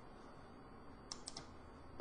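Three or four faint clicks in quick succession about a second in, from keys tapped on a computer keyboard, over low room hiss.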